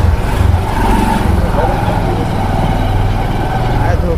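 Small two-wheeler engine running at low speed as heard from the rider's seat, a steady low rumble, with faint voices in the lane.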